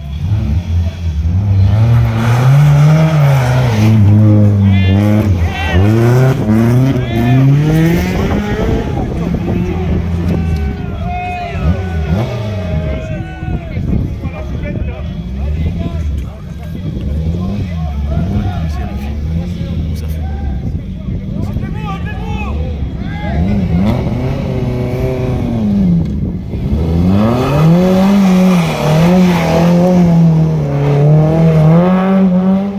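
Rally car engine revving hard, its pitch rising and falling over and over, with a brief dip in level about halfway through and a rise again near the end.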